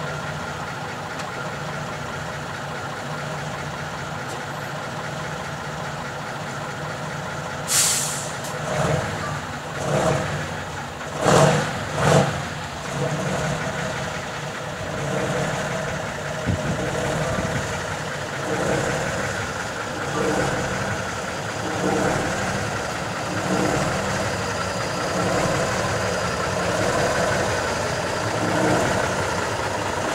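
Tatra 813 heavy truck's air-cooled V12 diesel running steadily at idle, with a short sharp hiss of air about eight seconds in and two loud bursts a few seconds later. The engine then pulses and grows louder as the truck moves up close.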